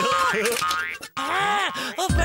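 Cartoon spring 'boing' sound effects for a bouncing pogo stick, mixed with a character's babbling voice. The sound cuts out briefly about a second in, then arching, rising-and-falling boing-like tones follow.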